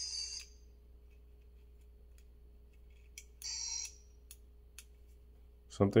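Miniature PKE meter toy's small speaker giving two short, buzzy crackles about three seconds apart, with faint clicks from its buttons in between; the owner puts the weak sound down to old, dying batteries.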